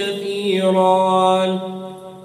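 A man's voice in melodic Qur'an recitation, holding the last syllable of a verse as one long note that fades out near the end.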